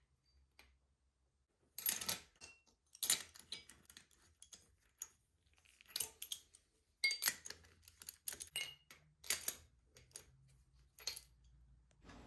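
Irregular metallic clicks and clinks, some ringing briefly, beginning about two seconds in, as new spark plugs are fitted and tightened with a hand tool into the cylinder head of a 1974 Kawasaki Z1B 900 engine.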